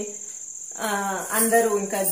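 A woman speaking in Telugu, starting about a second in after a short pause, over a steady high-pitched trill that runs underneath throughout.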